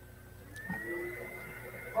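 Faint background noise on an open video-call microphone: a steady low electrical hum and a thin high-pitched tone that steps up slightly about half a second in, with a couple of soft rustles or knocks before speech starts.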